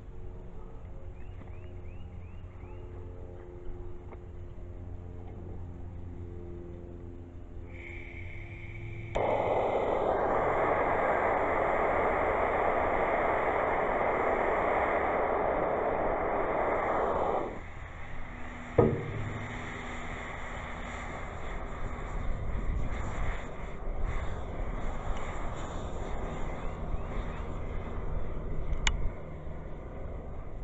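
Handheld propane torch hissing as the gas comes on, then running with a loud steady rush for about eight seconds before cutting off suddenly, followed by a single sharp knock. After that, a quieter uneven rushing as the potassium nitrate and sugar rocket fuel powder burns.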